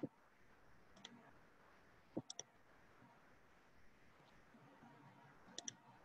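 Near silence: faint room tone broken by a few short, sharp clicks, three in quick succession a little after two seconds and a pair near the end.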